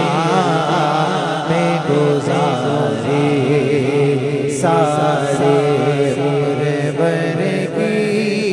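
Male voices singing a devotional Urdu naat over a steady, low, hummed vocal drone. A higher voice comes in about halfway through.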